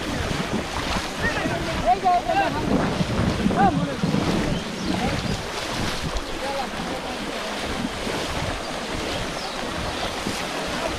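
Shallow muddy water sloshing and splashing as many people wade and work through it, with wind buffeting the microphone. A few short shouts rise above it about two to four seconds in.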